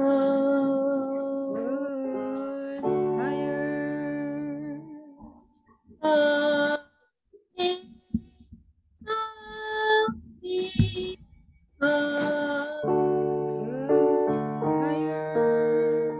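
A child singing vocal-exercise notes to keyboard chords, heard over a video call. The chords drop out in the middle, where short separate sung notes with pauses between them are heard, and come back near the end.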